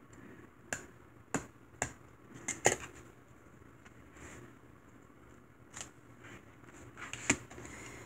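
A handful of sharp, short plastic clicks and taps, with quiet between them, as a stamp ink pad in its plastic case and a clear acrylic stamp block are handled and set down on the desk.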